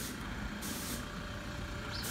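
Pickup truck driving slowly past, its engine running low under a steady rumble and hiss of tyres on the road.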